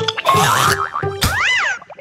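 Cartoon sound effects over light background music: a short swish, then a sharp hit followed by a boing whose pitch rises and falls.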